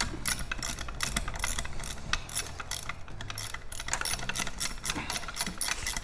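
Hand ratchet wrench clicking in quick, even strokes as a bolt holding the outboard's lower unit (gearcase) is backed out.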